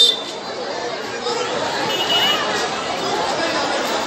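Crowd of many people talking over one another in a steady babble of voices.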